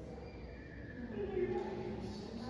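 Faint, indistinct voices over a steady room hum, with one voice a little louder about a second in.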